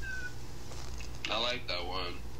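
A short, high, wavering vocal call lasting under a second in the second half, over a quiet room, with a faint brief gliding tone just before.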